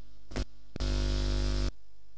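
Steady electrical mains hum on the audio line, broken by a short buzz and then a louder buzz lasting just under a second that cuts off suddenly.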